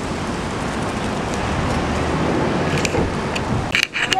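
Steady outdoor rushing noise, a haze of wind and road noise with a low rumble, that drops away just before the end, with a couple of short clicks.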